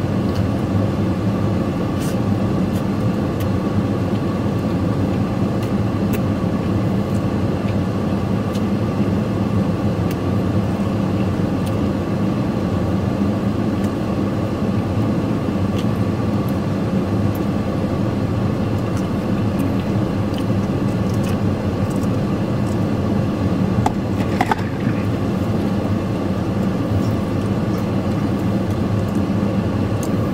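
Steady hum of an idling vehicle engine and air-conditioning blower inside a parked truck's cab, unchanging throughout, with a few faint clicks.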